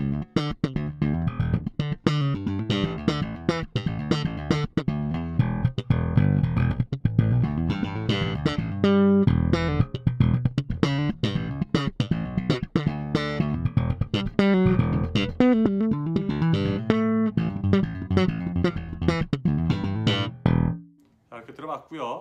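Fender Jazz Bass fitted with Delano pickups and a Delano preamp, all tone controls set flat, playing a bass line of plucked notes with sharp attacks. The playing stops about a second before the end.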